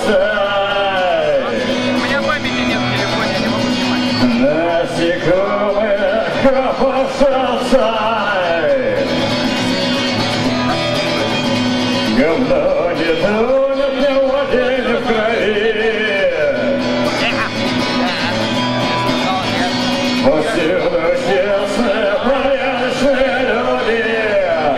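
A man singing in long melodic phrases while strumming an electric guitar, a live solo performance through a PA.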